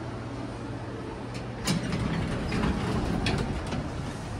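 Elevator landing doors sliding open: a sharp clunk a little before halfway, then about two seconds of rumbling door travel with a few clicks, over a low steady hum.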